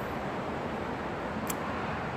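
Steady background hum with no distinct events, with a faint brief tick about one and a half seconds in.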